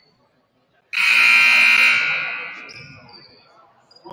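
Gym scoreboard buzzer sounding once: a sudden, loud, harsh blast about a second in, held for roughly a second and then dying away over the next second.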